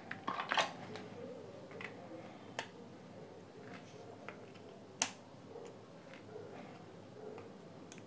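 Scattered small clicks and taps of hand tools on plastic: metal tweezers working at the speaker's plastic end cap, with a quick run of taps in the first second and one sharper click about five seconds in.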